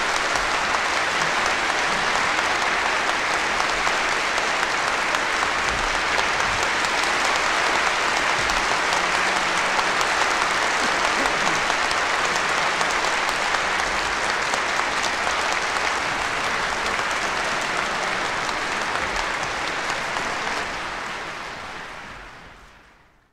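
Concert audience applauding at the end of a live big-band number, heard as a vinyl record plays back; the applause fades out near the end.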